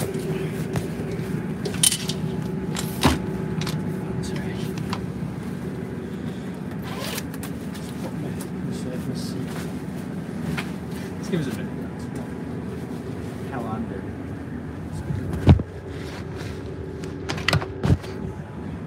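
Steady low hum of a standing passenger train carriage, its underfloor machinery or ventilation running. Knocks and scrapes come from a phone and tripod being handled, the loudest knock near the end.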